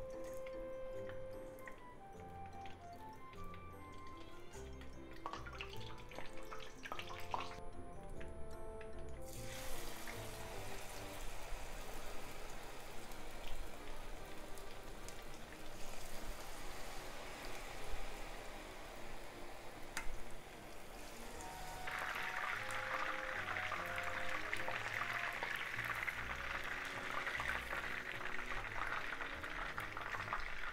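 Background music playing throughout, while hot oil in a frying pan begins to sizzle about a third of the way in as battered chicken is lowered in for tempura, the sizzling growing much louder about two-thirds of the way through.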